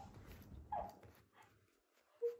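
A single faint, short squeak from an Asian small-clawed otter, falling in pitch, under a second in; otherwise near silence.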